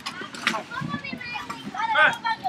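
High-pitched children's voices calling and chattering, overlapping, loudest near the end.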